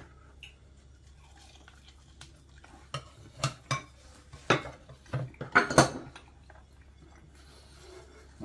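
Ceramic plates and cutlery clinking and knocking on a wooden table as pizza slices are served: a scatter of short clinks, most between about three and six seconds in, the loudest near six seconds.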